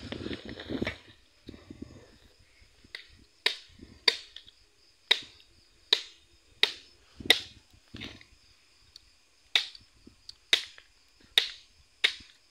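A machete chopping into the husk of a green coconut held in the hand. About a dozen sharp cuts come at uneven intervals, roughly one every half second to a second and a half.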